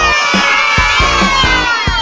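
A children's cheer sound effect, a long drawn-out "yay" that rises, is held and then slowly falls in pitch, over background music with a steady beat.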